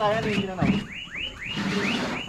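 Car alarm siren warbling in quick repeated rising-and-falling sweeps, about four to five a second.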